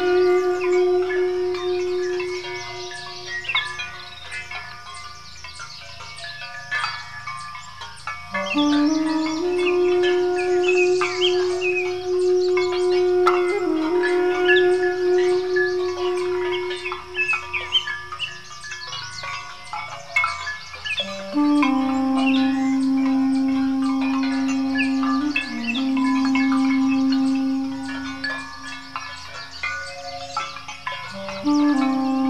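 Armenian duduk playing slow, long-held notes that drop to a lower note about two-thirds of the way through, with songbirds chirping throughout.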